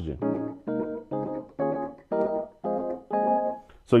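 A keyboard-style software instrument sounding a series of about eight short chords, roughly two a second, each struck separately and then dying away. The chords are played from the M-Audio Oxygen Pro 61 controller with the same even touch as on the Launchkey; the player finds that the Oxygen's keybed sends harder velocities for that same touch.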